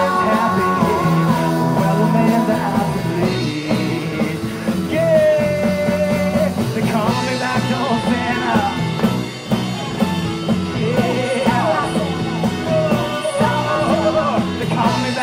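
Live rock band playing with singing: a male lead voice and female backing singers at their microphones, with several long held sung notes over the band.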